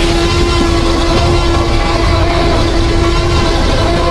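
Hollywood film sound effect of a Tyrannosaurus rex roar: one long, loud roar with a steady held pitch over a deep rumble. It is the movie roar, not a reconstruction of the real animal's voice.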